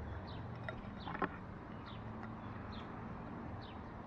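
A songbird repeating a short, high, down-slurred chirp about once a second over steady outdoor background noise, with one sharp click about a second in.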